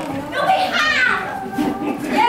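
Several high, lively voices calling out over one another with no clear words.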